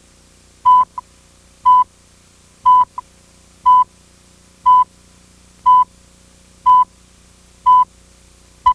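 Countdown beeps from a videotape slate: a short, loud, steady beep tone once a second, eight in a row, ticking off the countdown to the start of the commercial. A faint steady hum lies underneath.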